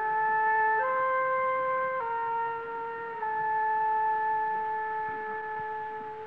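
Opera orchestra's wind instruments holding a slow series of sustained chords, each held a second or more before stepping up or down to the next, dying away at the end.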